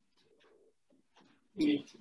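Quiet room with a few faint small handling sounds, then a man's voice starts up close near the end.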